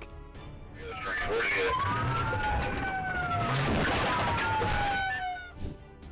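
Police car siren wailing, its pitch sliding slowly up and down over a rushing noise of the cruiser on the move; it starts about a second in and fades just before the end.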